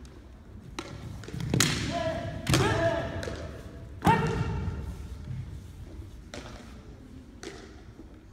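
Naginata sparring: three sharp knocks of bamboo naginata strikes and stamping feet on the wooden floor in the first half, each followed by a long, high shouted kiai, with the hall's echo.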